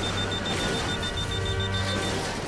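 Cartoon digital clock alarm: rapid high-pitched electronic beeping, about eight beeps a second, as the display strikes 12:00.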